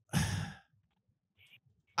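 A person's short breathy sigh, one exhale lasting about half a second.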